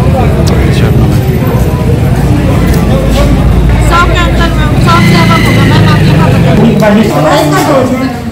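People talking at close range over a loud, steady low rumble that eases near the end.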